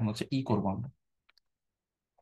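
A lecturer's voice speaks for about a second, then two faint clicks follow in quick succession.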